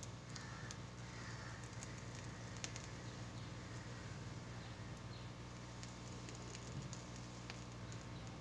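Faint room tone: a steady low hum with a few soft clicks.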